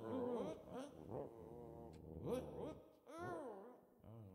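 A voice making soft, playful little calls, several short sounds whose pitch rises and falls, with pauses between, after the music has stopped.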